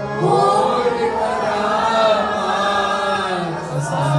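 Devotional Sikh kirtan: singers chant a Gurbani shabad together in gliding melodic lines, over the sustained reed tones of harmoniums.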